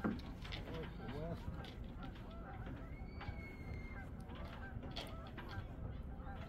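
Geese honking repeatedly with many short calls over a low steady rumble. A sharp knock comes right at the start, and a thin steady whistle sounds for about a second, three seconds in.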